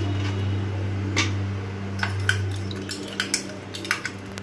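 A metal spoon stirring ice in a glass of soda, clinking against the glass: a few separate clinks, bunched more closely near the end. A low steady hum runs underneath and fades out about three seconds in.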